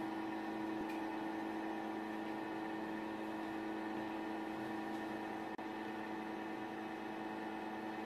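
Old drill press running, a steady even hum of several held tones from its motor and oil-filled gearbox, with a very brief dropout about five and a half seconds in.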